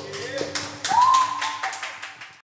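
Hand clapping with a voice calling out loudly about a second in, as the last acoustic guitar chord dies away in the first half second.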